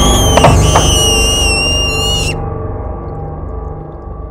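Horror-film jump-scare stinger: a loud high, wavering screech ringing over a deep rumble. The screech cuts off about two seconds in and the rumble slowly fades.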